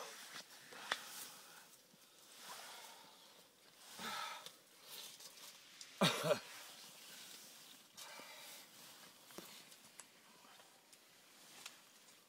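Faint scattered rustling and small handling clicks, with a few short murmured voice sounds, the loudest about six seconds in.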